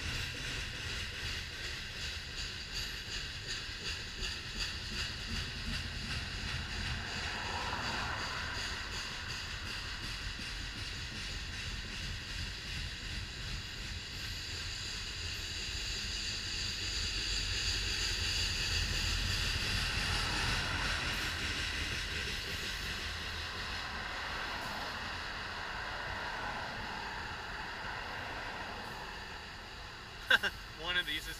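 Freight train of covered hopper cars rolling past, a steady rumble of wheels on rail with a thin high whine. Road traffic swells in and out twice, about eight seconds in and around twenty seconds.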